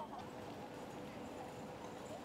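Busy city street ambience: a murmur of passers-by's voices and shuffling feet over a faint steady hum.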